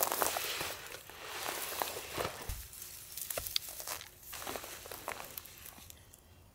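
Footsteps and rustling in grass and ferns as a backpack is taken off and a tripod is handled, with scattered small clicks from the gear.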